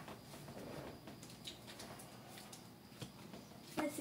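Trading cards being handled and sorted on a table: faint rustling of card stock with a few scattered light clicks and taps.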